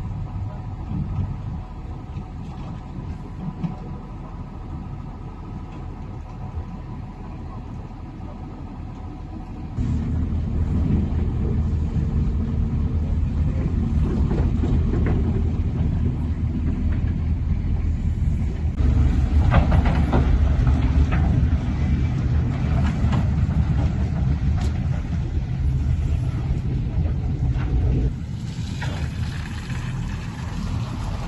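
Steady low rumble of heavy vehicle engines, trucks and road machinery running on a wet road. It steps up abruptly about ten seconds in, is loudest from about nineteen to twenty-eight seconds, then drops back.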